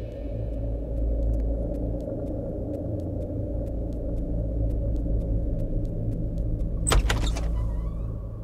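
Low, steady rumbling drone of a film's background score with faint ticking about three times a second, then a short sharp clatter about seven seconds in, as a door is opened.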